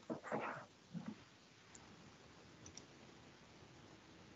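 A few faint clicks and soft rustles in the first second or so, then near-silent room tone on an open video-call line.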